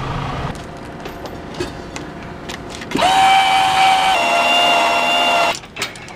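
Half a second of car cabin road noise, then a few small clicks. After that a small electric motor whines steadily for about two and a half seconds, stepping slightly lower in pitch partway through before it stops.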